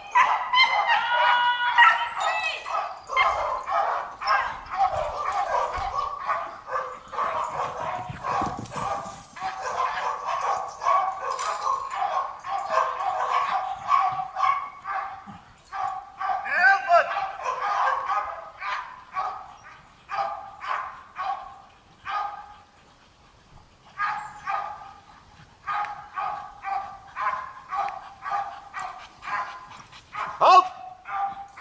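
Police dog in KNPV training barking over and over at a helper in a bite suit, the feigned attack of the exercise: she holds him by barking rather than biting. The first barks are high and bend in pitch with yelps mixed in. Near the end they come in a steady run of about two a second.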